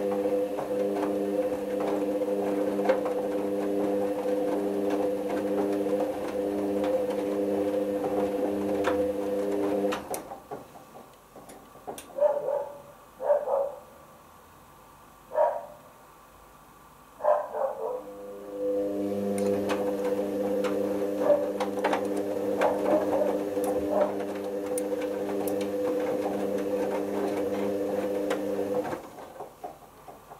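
Hoover Optima OPH714D washing machine in its main wash: the drum motor hums steadily as the drum tumbles the wet load for about ten seconds, stops for about nine seconds with a few soft sloshes, then turns again for about ten seconds and stops near the end.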